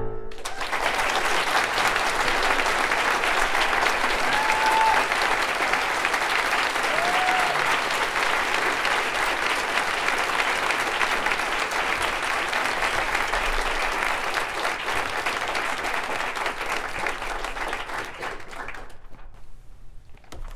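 Audience applauding at the end of a violin and piano performance: steady, dense clapping that begins as the last piano notes die away and thins out near the end.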